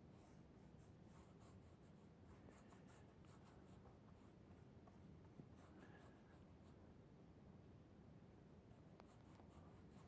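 Faint strokes of a flat paintbrush dragging wet oil paint across paper, in several runs of short quick strokes over a low room hum.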